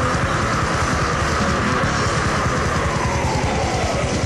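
Death metal from a 1996 cassette recording: distorted guitars over fast drumming, with a high note sliding slowly down in pitch through these seconds.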